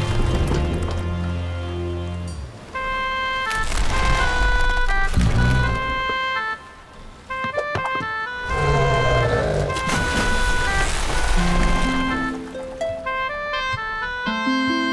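Animated-film score: a quick melody of short, tinkling high notes over a bass line, with bursts of noisy action sound effects mixed in about four and nine seconds in.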